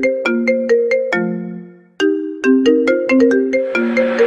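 A ringtone-like melody of quick, short struck notes, played as a break in a dance music mix. One phrase ends on a longer note that fades out just before halfway, then the melody starts again.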